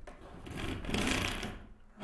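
Handling noise as a camera is moved about over a tabletop: a rapid scraping rattle that swells to a peak about a second in and fades away.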